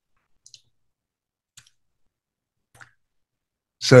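Near silence broken by three faint, brief clicks spaced about a second apart, then a man's voice begins speaking just before the end.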